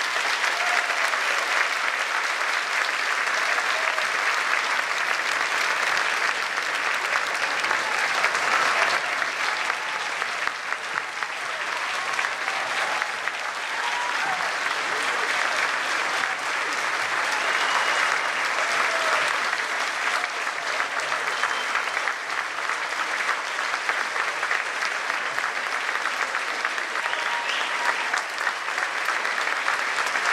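Concert audience applauding steadily and at length, with a few voices calling out from the crowd.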